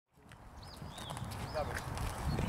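Birds chirping a few short notes over a low, uneven rumble, fading in from silence and growing louder.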